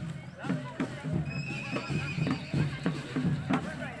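A drum beaten in a steady rhythm, about three strokes a second, with voices over it. A held high whistle-like tone sounds for about a second, a third of the way in.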